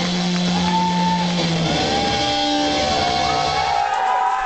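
Electric guitar noise and feedback as a live rock song winds down: held tones with pitches that bend slowly up and down over a noisy wash, and a low drone that stops a little under two seconds in.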